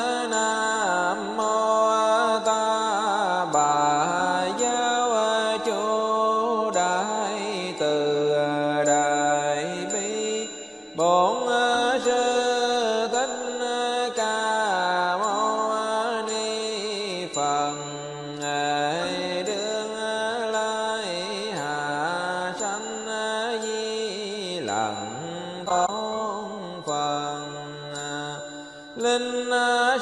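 Buddhist sutra chanting sung to a slow melody of long, gliding held notes over a musical accompaniment, with short breaks about eleven seconds in and near the end.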